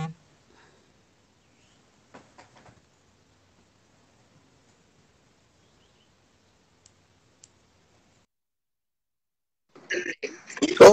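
Near silence: faint room hiss with a few soft clicks. Near the end the audio drops out completely for about a second and a half, as the livestream switches over to the joined call.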